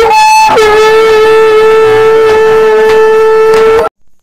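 Conch shell (shankh) blown in one long, loud note: it sounds on a higher overblown note for about half a second, drops to a lower steady note and holds it, then cuts off suddenly near the end.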